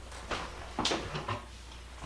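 A few light knocks and clatters of kitchen items being handled on a counter, as a wooden cutting board is picked up; the loudest is a sharp knock a little under a second in.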